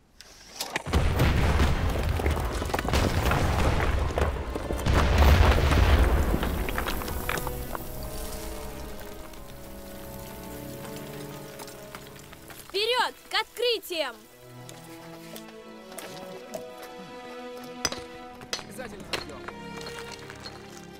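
An explosive blasting charge goes off from a plunger detonator: a loud explosion about a second in. Its rumble and falling debris die away over several seconds.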